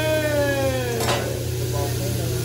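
Food sizzling on a teppanyaki griddle as the chef works his metal spatulas, with a short clack about a second in and a steady low hum underneath. Over the first second a drawn-out cheering voice rises and then slowly falls in pitch.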